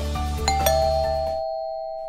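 Background music with a two-note doorbell chime, ding-dong, about half a second in: a higher tone then a lower one, ringing on and slowly fading. The music's beat drops out partway through while the chime still sounds.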